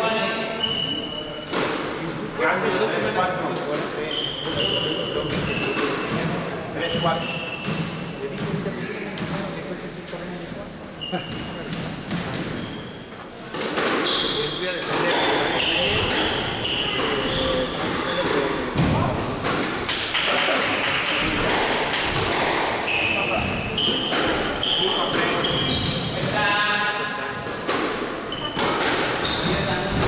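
Squash rally: the ball struck by rackets and smacking off the court walls in sharp repeated hits, with sneakers squeaking on the hardwood court floor.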